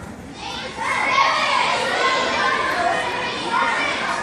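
A large crowd of schoolchildren talking and calling out all at once in a gymnasium, swelling about a second in.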